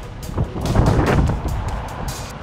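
Wind buffeting the camera's microphone: a low rumble that swells about half a second in and fades after a second or so, with short crackles throughout.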